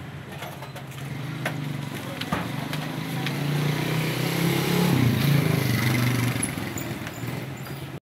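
An engine running nearby, growing louder to a peak about five seconds in and then easing off, with a few sharp clicks and knocks in the first half.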